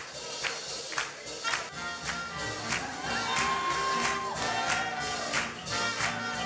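Swing jazz band music playing with a steady beat of about two strokes a second, and a single note held for about a second in the middle.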